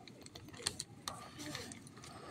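Faint crinkling and rustling of thin plastic sheeting handled at its tied edge, with a few small clicks.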